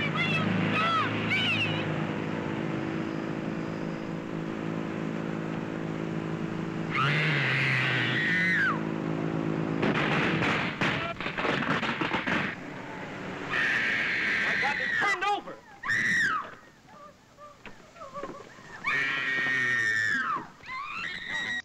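Old film soundtrack of a car crash: a steady drone for the first several seconds, then a woman screaming in long high cries three times, with a burst of crashing noise about ten seconds in.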